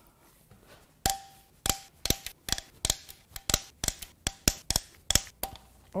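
Ratchet wrench clicking as it backs off camshaft bearing-cap bolts on an aluminium cylinder head: sharp, irregular clicks about four a second, starting about a second in.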